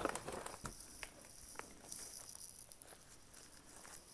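Faint rustling of cardboard boxes and plastic wrapping being handled, with a few light clicks.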